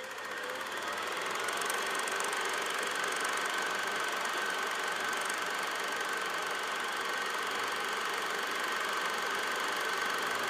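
A small machine whirring up over the first second, then running steadily, with a steady high whine over the whirr.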